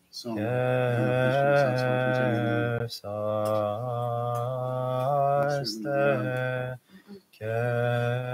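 A man chanting a liturgical hymn on long, steadily held notes, in three or four phrases with short breaks for breath about three, six and seven seconds in.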